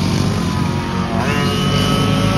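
Racing go-kart engine running on the track, its pitch rising sharply about a second in as it accelerates.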